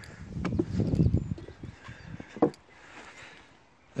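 Footsteps crunching on a wood-chip path, a run of irregular low steps in the first two seconds and one sharper knock about two and a half seconds in.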